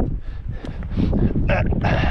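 Low rumbling noise on the microphone, with a man's breathy huff of laughter starting near the end.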